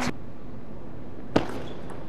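A single sharp click of a table tennis ball against bat or table, about two-thirds of the way through, over the steady background noise of a large hall.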